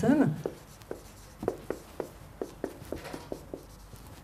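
Writing on a lecture-room board: a string of short, irregular taps and strokes, about three a second, as a formula is written out.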